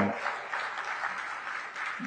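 Audience applauding: a steady patter of many hands clapping.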